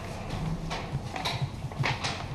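Computer keyboard keys being typed: a few sharp clicks about half a second apart over fainter key taps.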